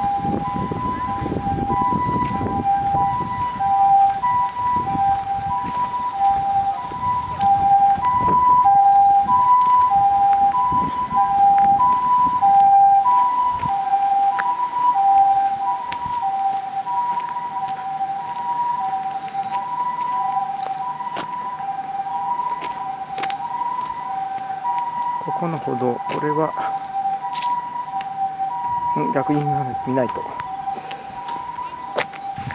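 Ambulance siren sounding a two-tone hi-lo wail that alternates steadily between a higher and a lower note throughout, like the Japanese "pee-po" pattern.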